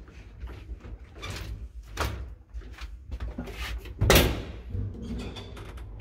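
Old lift's folding scissor gate, wooden slats on metal links, being pulled shut by hand: a series of rattling clacks about a second apart, the loudest about four seconds in.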